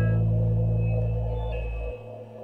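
Experimental ensemble film music: a loud, sustained low drone chord of steady held tones. Its higher notes fade out early and the drone cuts off just before the end.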